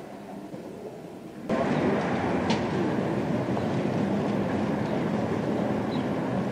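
Quiet interior room tone that cuts off suddenly about a second and a half in to a loud, steady din of an outdoor market crowd and street noise, recorded through a camcorder's built-in microphone.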